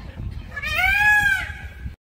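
A single farm animal's bleat, one drawn-out call about half a second in that rises and then falls in pitch, over a low background rumble.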